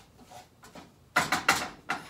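Spoon stirring damp rinsed quinoa in a small saucepan on the stove, scraping and knocking against the pan in three quick strokes in the second half.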